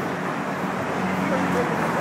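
Busy city street ambience: a steady hum of traffic with indistinct voices of people nearby.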